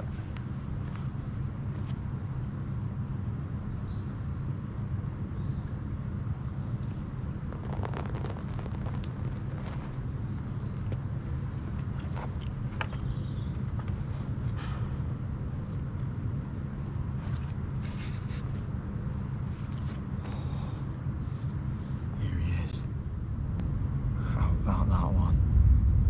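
Steady low rumble of outdoor background noise, with scattered light clicks and rustles from a landing net and fishing gear being handled.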